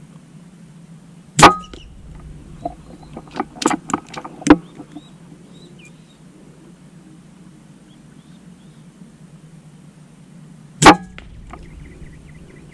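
Two shots from an air rifle firing slugs, one about a second and a half in and one near the end. Between them comes a short run of mechanical clicks and knocks as the rifle is cycled for the second shot.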